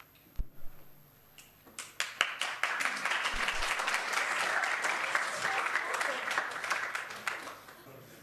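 Audience applauding, starting about two seconds in and dying away near the end.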